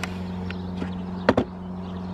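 Wooden frames of net bed covers being slid into place and knocking together: a sharp knock at the start and a quick double knock just over a second in, over a steady low hum.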